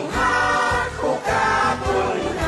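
Background music: a choir singing held notes over a rhythmic accompaniment.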